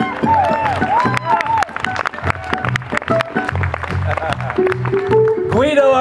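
Small live band vamping: a violin plays sliding phrases over strummed guitar, a pulsing bass line and percussion. A voice comes in just at the end.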